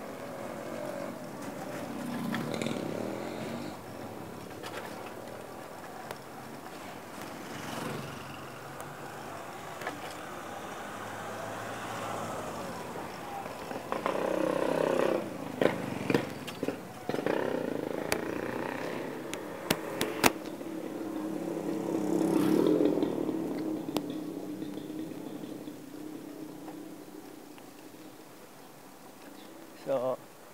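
Street traffic heard while riding along: motorcycle and car engines swell and fade as they pass, with a few sharp clicks about two-thirds of the way through.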